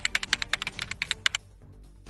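A quick run of keyboard typing: about a dozen sharp clicks in under a second and a half, then they stop, over faint background music.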